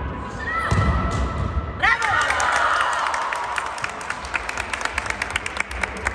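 Indoor futsal game play on a sports-hall court: two short shoe squeaks on the floor, then a run of quick thuds and taps from the ball and the players' feet, with players' voices.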